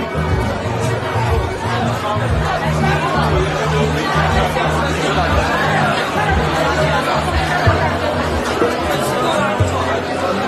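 Many people chatting indistinctly over music playing in the background.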